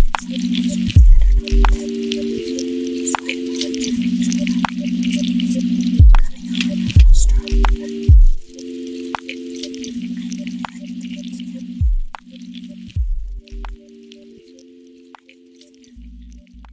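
Instrumental chill beat: held synth chords that step between notes, low bass hits that slide down in pitch, and short clicking percussion. The track fades out over the last few seconds.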